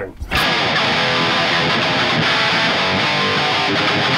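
Electric guitar strummed hard through heavy distortion, a dense, steady wall of chords starting a moment in.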